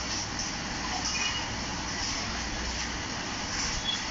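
Steady background noise, an even hiss with a low rumble underneath, unchanging throughout, with no speech.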